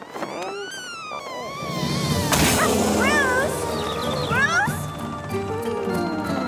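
Cartoon soundtrack: music score with sliding, whistle-like sound effects, and a sudden loud whoosh a little over two seconds in.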